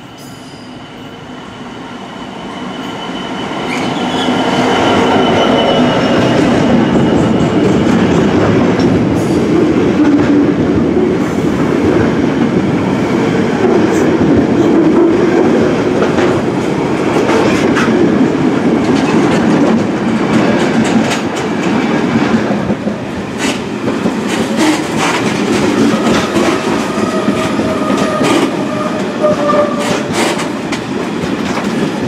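Class 66 diesel freight locomotive's EMD two-stroke V12 engine approaching and passing, loudest about four to five seconds in. A long train of loaded engineering wagons then rolls past with steady rumble and clickety-clack of wheels over rail joints, with thin wheel squeal at times.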